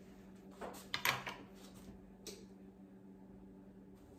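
Aluminium baking sheet knocking and clattering against the counter as it is picked up, a quick cluster of sharp metallic knocks about a second in and one softer knock a little after two seconds.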